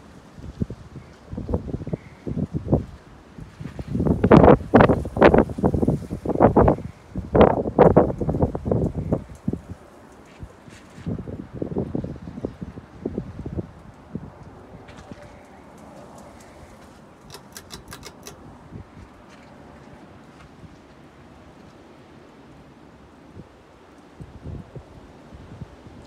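Hunter Stratford II ceiling fan running, a steady faint whoosh, under irregular gusts of air buffeting the microphone for the first half; a few short high clicks come about two thirds of the way in.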